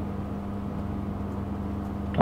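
Steady low hum of room tone picked up through the microphone, with no speech.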